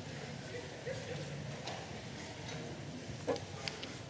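Small clicks and knocks of a laptop and its cable being handled and plugged in, with a sharper knock a little past three seconds in and a few more quick clicks near the end, over low room murmur.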